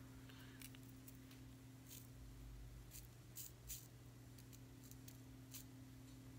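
Near silence over a steady low hum, broken by several faint short clicks: metal tweezers picking tiny metal nail charms out of a plastic tray.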